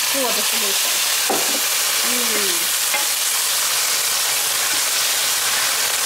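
White wine sizzling in a hot frying pan of toasted risotto rice and shallots, a steady loud hiss as the wine cooks off. The rice is stirred with a spatula as it sizzles.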